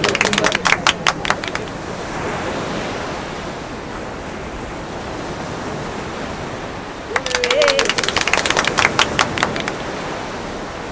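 Hand clapping in two bursts: one for about a second and a half at the start, another for about two seconds starting about seven seconds in. Between them is a steady hiss of room noise.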